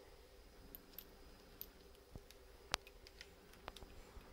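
Faint scattered clicks and handling noise of multimeter test leads and an alligator clip being moved between the motor's phase wires, the sharpest click a little before three seconds in, over a faint steady hum.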